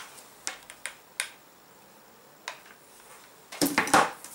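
Hands handling a felt scarf and a small doll: a few scattered light clicks and taps, then a denser burst of clicking and rustling near the end.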